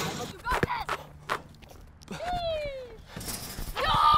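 A basketball knocking twice on the rim, backboard or court, with a single falling shout from a player between them and the word "go!" shouted near the end.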